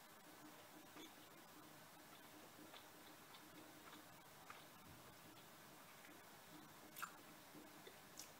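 Near silence: faint room tone with a few soft mouth clicks from chewing a mouthful of beef stew, the sharpest click about seven seconds in.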